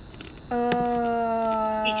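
One long, steady voice-like tone, held for about a second and a half with a slight fall in pitch, starting about half a second in.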